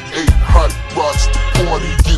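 Chopped-and-screwed hip hop: a slowed, pitched-down rap vocal over deep bass hits.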